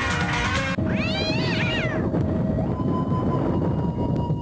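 Music cuts off abruptly under a second in, followed by one long meow-like call that rises and falls in pitch over about a second. Then comes a low rumble with a few steady tones held over it.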